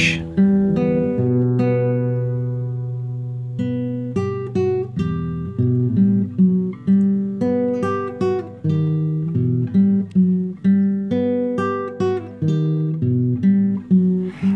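Background music on acoustic guitar: a run of picked notes and chords, each fading after it is plucked, with one low chord left ringing for a couple of seconds about a second in.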